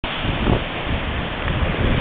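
Ocean surf washing and churning over shoreline rocks, a steady rushing noise, with wind buffeting the microphone in an irregular low rumble.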